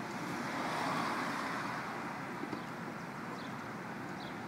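Road traffic noise, swelling as a vehicle passes about a second in and then fading back to a steady hum, with a few faint small clicks.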